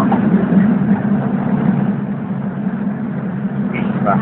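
Steady low drone of a moving city public-transport vehicle, heard from inside the passenger cabin.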